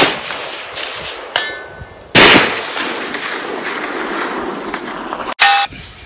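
A .308 rifle shot at the very start, then a smaller sharp hit with a short ringing tone about a second and a half in: the bullet striking a 12-inch steel gong at 400 yards. A second loud bang follows about two seconds in and fades slowly, and a short metallic clack comes near the end.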